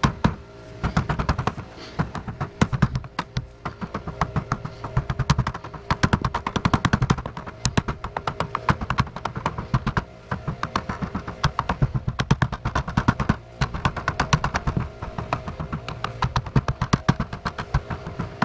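Rubber mallet tapping soft lead flashing around a brick chimney corner in rapid light blows, several a second, with short pauses. The lead is being worked gently, a little at a time, so it stretches round the corner without tearing.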